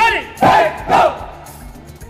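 Loud shouted drill calls from a squad of marching cadets as it comes to a halt: a shout right at the start, then two sharp shouts about half a second and a second in. Background music plays underneath.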